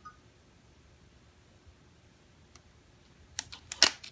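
Buttons on a Canon EOS 70D DSLR body being pressed: a quick run of four or five sharp clicks near the end, after a few seconds of quiet room tone.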